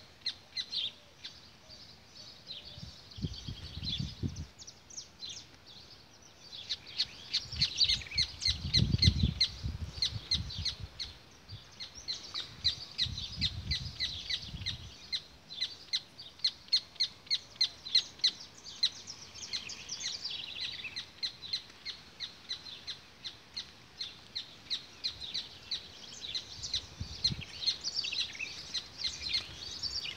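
Small birds chirping in rapid series of short high calls, growing denser from about seven seconds in and going on to the end. A few brief low rumbles come and go beneath them.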